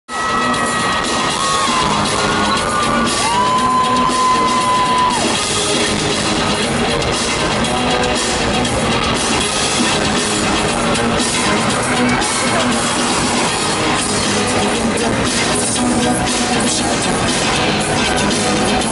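Loud live concert music over an arena sound system, heard from within the audience, with the crowd cheering over it.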